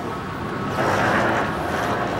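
Airport concourse background noise: a steady low hum under a rushing hiss that grows louder a little under a second in.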